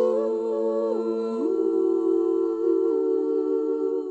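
Female a cappella quartet humming a slow, sustained chord in close harmony as a lullaby introduction. About a second in, the upper voices move down and the lowest voice glides up a step, then the new chord is held.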